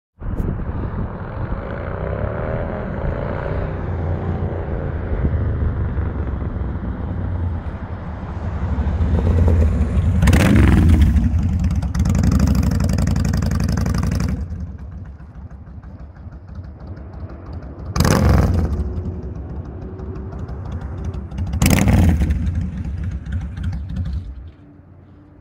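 2005 Kawasaki Vulcan 1600 Classic V-twin with aftermarket Cobra exhaust pipes, running as the bike is ridden with a deep, steady rumble. The revs climb about ten seconds in, and there are two short bursts of throttle near the end.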